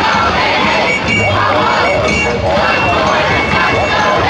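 Large rally crowd cheering and shouting, many voices at once, loud and unbroken.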